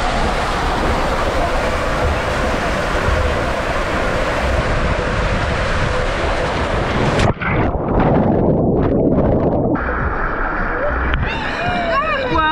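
Loud, steady rush of water and air over a rider sliding down an enclosed water slide. About seven seconds in it turns suddenly dull and muffled, like sound heard underwater, at the splashdown into the pool.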